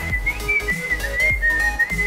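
A person whistling with pursed lips: one clear, high tone that wavers a little in pitch, held through the whole stretch.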